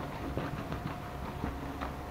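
Damp microfiber cloth, soaped with coconut soap, wiped firmly over a white faux-leather sofa back, giving faint irregular rubbing and soft tapping sounds.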